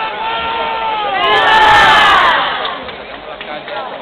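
Crowd of many voices shouting and cheering together, swelling to a loud peak about a second and a half in, then fading.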